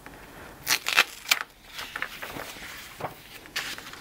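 Masking tape peeled and a sheet of drawing paper handled: a few short crackles and rustles.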